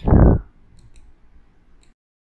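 A brief, loud low thump on the microphone at the very start, followed by a few faint, sharp computer mouse clicks. The sound cuts off suddenly just before the end.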